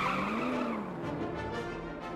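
Truck tyres squealing as it spins doughnuts, the squeal wavering and dying away about a second in, leaving a quieter rumble.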